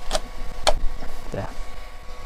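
Two sharp clicks about half a second apart from a handheld belt sander being handled as its sanding belt is fitted back on.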